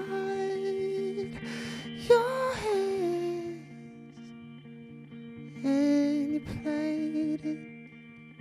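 A man's voice singing a slow, wordless melody into a microphone, in three phrases, the middle one rising then falling. Soft, sustained instrumental notes and plucked guitar carry on underneath, quieter in the gap between the second and third phrases.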